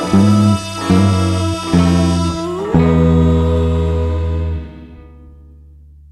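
Bass guitar played along with a recording of the song's ending: three short bass notes sound under a held sung note, then a final chord with a low bass note rings out and fades about two thirds of the way through.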